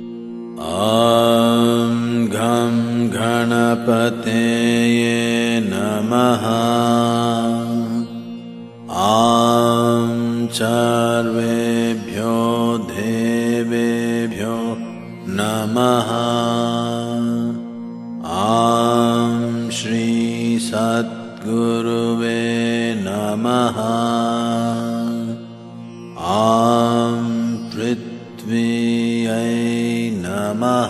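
A voice chanting a Sanskrit mantra in long, melodic phrases over a steady drone, a new phrase starting about every nine seconds.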